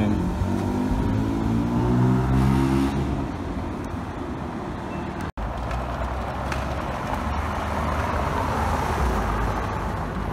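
Porsche 911 flat-six running as the car pulls away, its engine note falling slightly and fading over a few seconds; the exhaust is loud enough that it is taken for a non-stock exhaust. After a cut about halfway through, steady street traffic noise.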